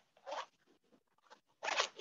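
Two short scraping rustles, the second louder near the end: handling noise from movement close to the microphone.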